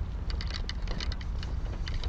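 Steady low wind rumble on the microphone, with scattered light irregular clicks and ticks from handling of the fishing rod and reel.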